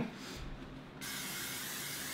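Aerosol cooking spray hissing steadily onto a metal baking pan, starting about a second in, as the pan is greased.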